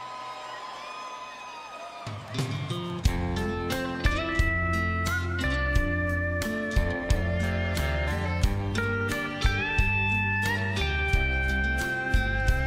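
Live country band opening a slow song: a steel guitar plays gliding, sustained notes alone at first. Bass comes in about two seconds in, and drums about a second later with a steady beat under the steel guitar's melody.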